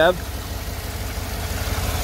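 Vortec V8 engine idling with the hood open: a steady, low, even rumble.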